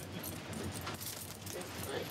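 Metal restraint chains clinking lightly, a few small scattered metallic clinks, as they are handled and hung on a wall hook.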